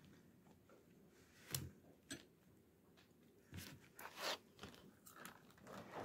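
Near silence broken by a handful of faint, short, crisp snips and crackles: scissors cutting the plastic tags that hold a Barbie doll in its cardboard-and-plastic box.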